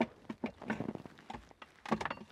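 Scattered light clicks and knocks, with a small cluster near the end, as a bottle is handled and drawn out of the rear-seat champagne fridge in a Bentley Mulsanne.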